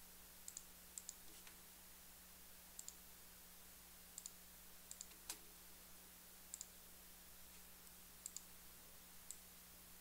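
Computer mouse clicking: about a dozen faint, sharp clicks, most in quick pairs, the loudest a little past halfway, over a faint steady hum.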